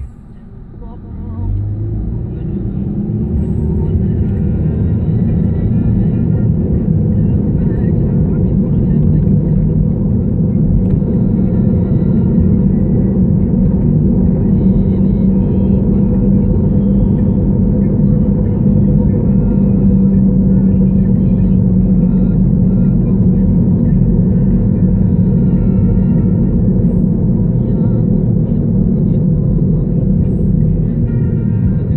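Low rumble of a car's engine and tyres heard inside the cabin, building over the first few seconds as the car pulls away from a stop, then holding steady at cruising speed.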